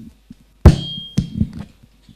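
Handheld microphone knocked while being handled: a sharp, loud thump about two-thirds of a second in, then a smaller click.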